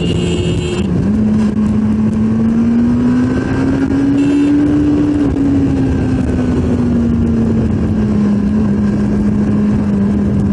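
1986 Kawasaki GTR1000 Concours inline-four engine pulling on the road at speed. After a short dip about a second in, its note rises steadily for about four seconds as the bike accelerates, then eases slowly back down. Wind noise runs under it throughout.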